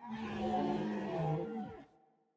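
A low, drawn-out roar of about two seconds, dropping in pitch as it ends: a dinosaur roar.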